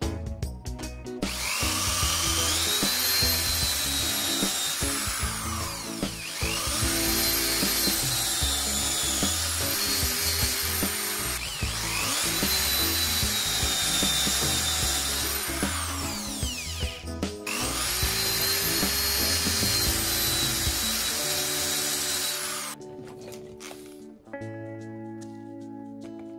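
Cordless drill boring holes into wooden blocks, in four runs of several seconds each, its motor whine climbing as it speeds up and dropping as it stops, with background music underneath.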